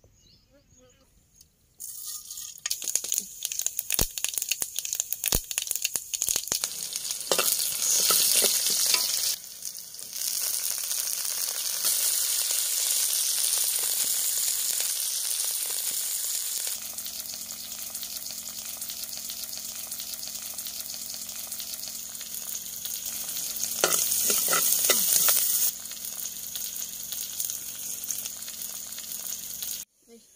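Food frying in hot oil in a clay pot: a steady sizzle with crackles that starts about two seconds in and swells louder twice.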